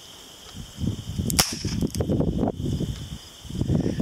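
Footsteps and branches rustling as someone pushes through dense brush, with one sharp crack about a second and a half in: a blank pistol fired.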